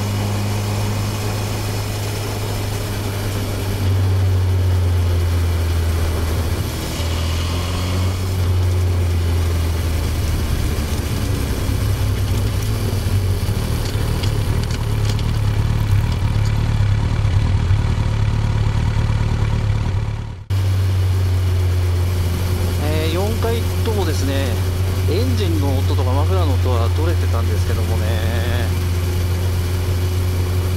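Honda CB1000R's inline-four engine and exhaust running while the motorcycle is ridden, heard as a loud, steady low hum picked up by on-bike microphones. The audio drops out suddenly for a moment about twenty seconds in. A voice is faintly mixed in under the engine near the end.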